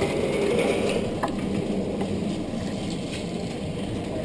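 Steady mechanical rattling and ticking, with one sharper click a little over a second in.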